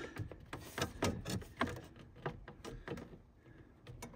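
Scattered light clicks and knocks of a charger unit's housing and its steel mounting bracket being shifted by hand while the mounting holes are lined up.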